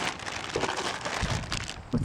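Clear plastic bag crinkling as it is handled, with scattered rustles and a few soft bumps.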